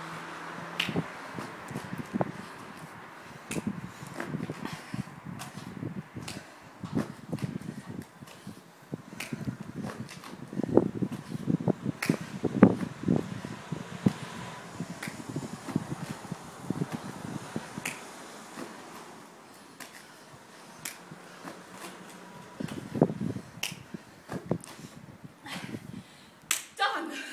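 A person doing repeated burpees on foam floor mats: irregular taps and dull thuds as hands and feet land and push off, with the thuds bunched most thickly in the middle of the stretch.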